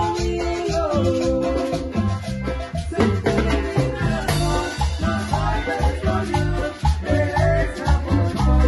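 A live band playing Latin dance music with a steady bass beat, electric guitar, conga drums and accordion.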